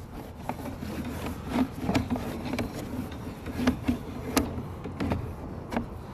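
Sewer inspection camera's push cable being fed by hand down the line, rubbing and scraping steadily with irregular clicks and knocks.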